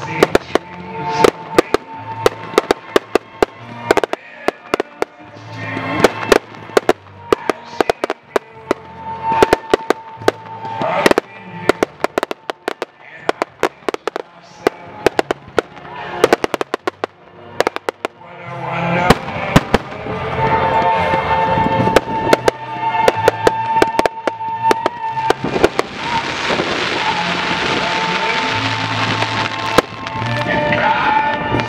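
Fireworks display: a rapid, irregular stream of sharp bangs from shell launches and bursts, heard over music with long held notes and a bass line. From about 25 seconds in, the bangs give way to several seconds of dense, continuous fizzing noise.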